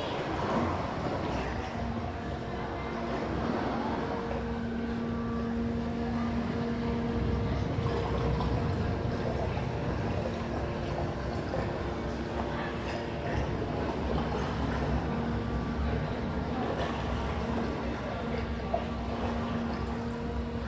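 Sound installation playing through floor-standing loudspeakers in a gallery room: a continuous low rumble with a steady two-pitch hum that sets in about two seconds in, fades midway and returns near the end.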